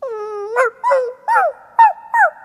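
Saint Bernard puppy whining: one drawn-out whine, then four short whimpers in quick succession, each rising and falling in pitch.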